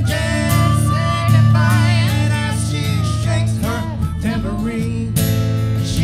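A small acoustic band playing a song live: a woman and men singing over plucked acoustic strings, with an upright bass holding low notes underneath.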